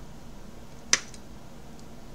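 A single sharp click about a second in, followed at once by a fainter one, over a low steady room hum.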